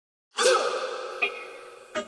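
An opening sound effect: a sudden loud burst that fades away over about a second and a half, with a short sharp hit partway through and another at the end.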